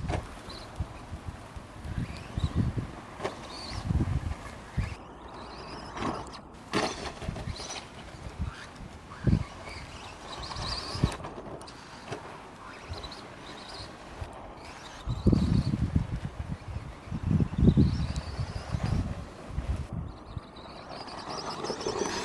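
A 1/10-scale TLR 22T 2.0 electric stadium truck driving, its 13-turn electric motor whining up and down as it speeds up and slows. There are several sharp knocks, and repeated bursts of low rumble, heaviest about two-thirds of the way through.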